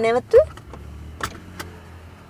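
Low steady drone of a moving car as heard inside its cabin, following a few words of speech. Two short clicks come about a second and a half in.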